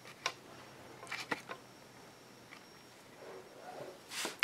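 Quiet room with a few faint, short clicks and taps, the first shortly after the start and a cluster about a second in. The sounds come from an angle paintbrush being worked on a sheet of poly-coated palette paper as paint is blended into the bristles.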